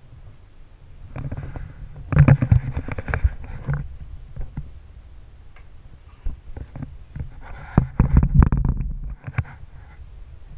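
Knocks, bumps and rubbing of a person shifting his weight on the bare wooden planking inside a small boat hull, in two rough stretches with a low rumble under them, about a second in and again near the end, with scattered light knocks between.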